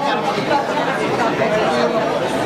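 Chatter of many people talking at once: a steady murmur of overlapping voices in a busy room.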